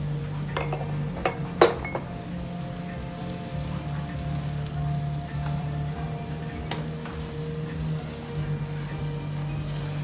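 Wooden spatula stirring vegetables in a steel wok, with a few sharp clinks and knocks, the loudest about a second and a half in, over a faint frying patter. Quiet background music runs underneath.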